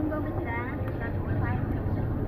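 A person talking over the steady low rumble of a car, heard from inside the car's cabin.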